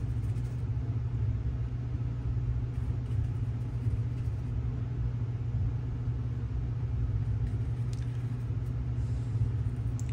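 Steady low hum of background noise at an even level, with no distinct strokes or knocks over it.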